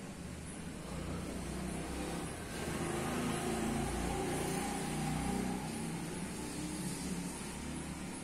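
Road traffic: a motor vehicle passing, its low engine and tyre rumble swelling from about a second in and easing toward the end.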